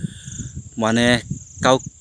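Steady, high-pitched buzz of insects calling in grassland, running without a break, with a man's voice speaking briefly in the middle.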